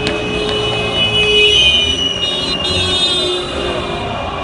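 Loud street noise of vehicles around a marching crowd, with several steady high-pitched tones and a short tone that rises and then slowly falls about a second and a half in.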